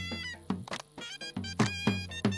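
Traditional folk dance music: a drum beating a quick rhythm under a high, wavering melody on a reed wind instrument.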